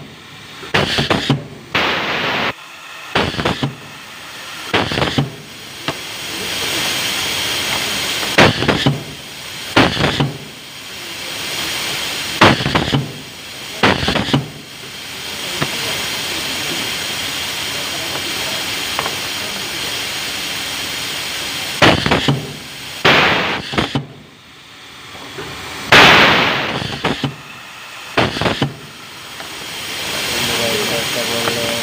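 Pneumatic cable insulation cutting machine cycling: its air cylinders clack and vent air in about a dozen sharp bursts at irregular intervals, over a steady hiss that runs unbroken from about 15 to 22 seconds in.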